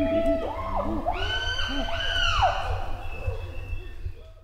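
A group of chimpanzees pant-hooting together in a chorus. Several voices overlap: rhythmic low hoots build to loud, high-pitched screams about a second in, then fade near the end.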